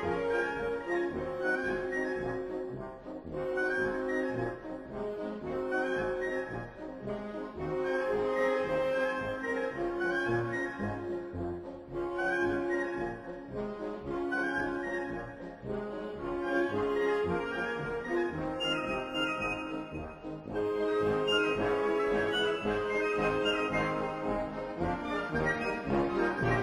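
Military band playing a march, with brass carrying the tune in regular, evenly paced phrases. The band grows somewhat louder in the last few seconds.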